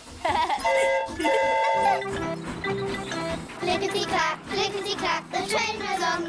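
A cartoon steam locomotive's whistle blows twice in quick succession, each blast a steady chord of tones, followed by cheerful background music with voices.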